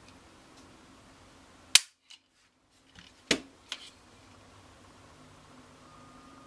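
Ruger 22/45 Lite pistol dry-fired: a single sharp metallic click as the trigger breaks and the hammer falls under the pull of a trigger gauge, at about three and a quarter pounds on its polished sear and trigger bar. About a second and a half later come a second sharp click and a couple of lighter ones.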